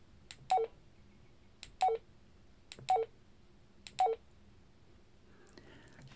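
Baofeng UV-5R handheld transceiver's key beep, four times about a second apart as the down arrow is pressed, each beep a short two-note tone stepping down in pitch with a faint key click just before it. Each beep marks one 2.5 kHz step down in the tuned frequency.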